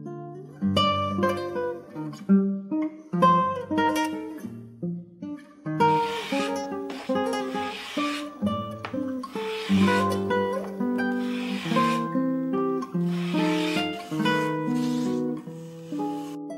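Background music: a solo acoustic guitar playing a piece of plucked notes that follow one another without a break.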